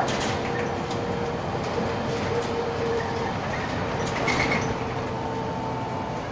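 Inside a Volvo 7000 city bus on the move: a steady hum of drivetrain and road noise, with a whine that comes and goes. A few short clatters sound through the cabin.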